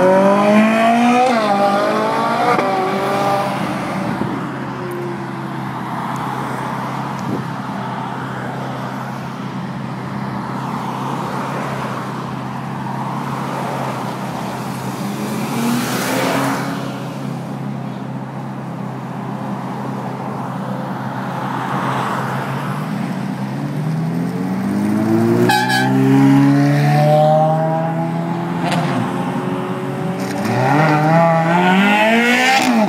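Ferrari V8 sports cars accelerating hard through the gears as they pull away past the listener. The engine notes climb steeply in pitch and drop back at each upshift, first in the opening seconds and again over the last several seconds. In between is steadier road noise with a couple of cars passing.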